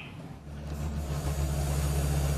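Excavator's diesel engine running under load as its bucket works a brick kiln wall, a steady low hum that grows louder about half a second in.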